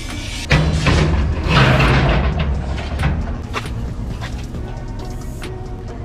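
Background music with a steady beat, over long steel rebar being bent and dragged on a concrete sidewalk. About half a second in comes a loud, rough scrape lasting about two seconds, then a few sharp clinks.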